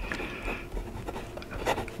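Fine steel nib of a Jinhao X159 fountain pen writing a word on paper and then drawing a stroke under it: a faint, scratchy rustle of the nib with small ticks.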